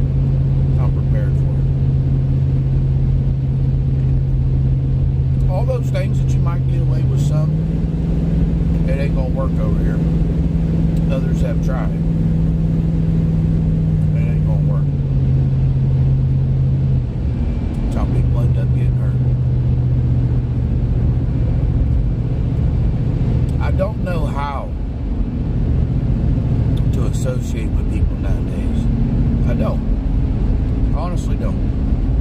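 Car interior noise while driving: a steady low road rumble under a droning engine tone. The tone rises in pitch about seven seconds in, falls back around fifteen seconds, and drops away briefly near seventeen seconds before settling again.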